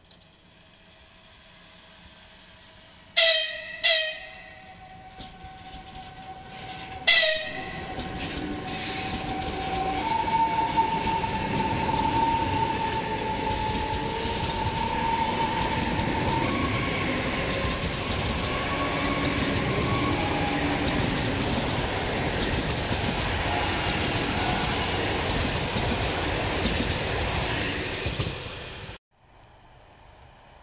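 ЭГ2Тв Ivolga electric multiple unit sounding its horn: two short blasts a few seconds in, then a third about seven seconds in. The train then passes close by, its wheels on the rails building to a loud, steady rush with a held whine for several seconds. The sound cuts off suddenly near the end.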